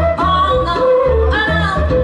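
Live band playing a reggae groove, with a flute carrying a sliding melody over a pulsing bass line.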